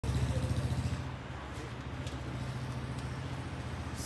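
John Deere 5310 tractor's three-cylinder diesel engine idling steadily, a little louder in the first second.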